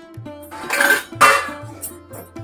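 Stainless steel kitchenware clattering twice, about half a second in and again just after a second, over background music.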